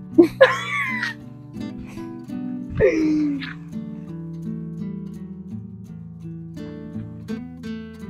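Background music with a plucked acoustic guitar playing steadily. Near the start a woman laughs briefly, and about three seconds in there is another short vocal sound that falls in pitch.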